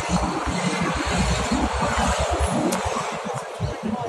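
City street noise: traffic running steadily, with a choppy low rumble throughout.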